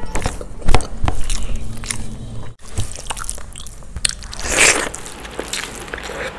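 Close-miked sounds of biryani being eaten by hand: irregular wet clicks, smacks and chewing, with rice squished between fingers. The sound drops out briefly about halfway through, and a louder crunchy rustle comes about four and a half seconds in.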